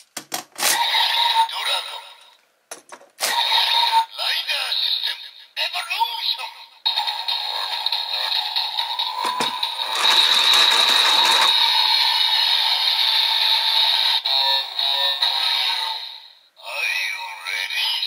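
DX Evol Driver toy transformation belt: clicks as the Evolbottles are slotted in, its recorded electronic voice calling out the bottles, then its looping synthesized standby music, loudest in the second half.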